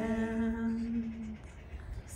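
A man's voice singing, holding one long steady note that ends about one and a half seconds in, leaving a short quiet pause.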